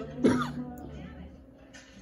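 A person's single short cough about a quarter second in, during a pause in the music, after which the sound dies away to a quiet lull.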